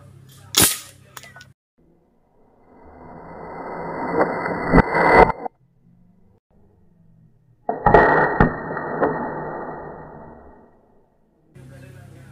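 A single sharp shot from an air rifle about half a second in, followed by a couple of faint clicks. After it come two long swells of dull noise with a few knocks inside them: the first builds up and cuts off suddenly around the middle, the second starts suddenly and fades away.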